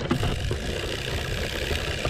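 Push-type broadcast spreader rolling on pneumatic tyres, heard close: a steady mechanical whirr and rattle from its wheels, gear drive and spinning impeller.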